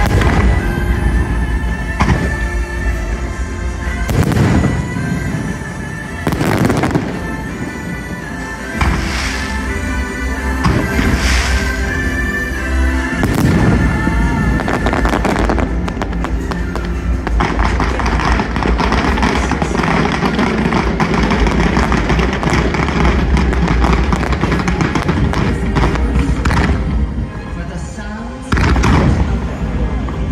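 A fireworks show's music playing loud over the loudspeakers, with firework shells going off about every two seconds through the first half. A denser crackle of fireworks follows, and one more burst comes near the end.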